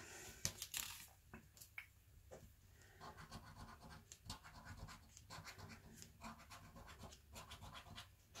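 A coin scraping the scratch-off panel of a lottery scratchcard, faint, in many short quick strokes.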